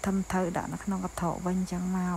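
A steady high-pitched insect trill, typical of crickets, sounding under people's voices.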